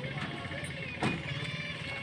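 A single hammer blow on the wooden stair formwork about a second in, a nail being driven into the shuttering board, over a steady low background hum.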